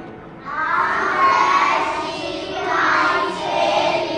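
A class of young children reading a sentence aloud together in unison, starting about half a second in.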